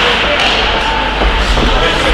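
Ice hockey game sound in an indoor rink: indistinct shouting voices over a steady din, with a few knocks of sticks and puck.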